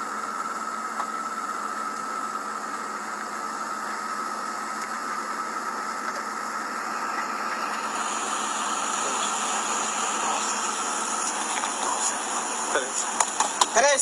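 Steady background noise of a night-time phone recording beside a stopped SUV, plausibly its engine idling, with a thin steady whine that fades out about eleven seconds in and a brighter hiss from about eight seconds. A few short knocks and a voice near the end.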